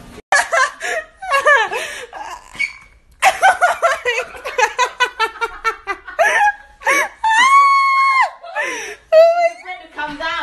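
People laughing hard in high-pitched, rapid bursts, then one long, steady high-pitched squeal a little past seven seconds.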